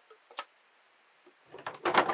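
Hard plastic clicks and knocks from a water filter canister, its carbon block cartridge and the unit's case being handled. There is one faint tick early, then a quick cluster of clicks and knocks near the end.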